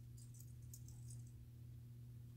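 Near silence: steady low room hum, with a few faint, short high clinks in the first second.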